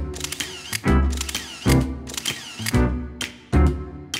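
Camera shutter clicks over background music with a heavy beat about once a second.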